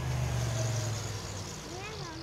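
A passing car on the road alongside: a low engine hum and tyre noise, loudest at the start and fading away.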